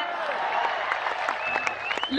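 Audience applauding, with a thin held tone rising out of it in the second second.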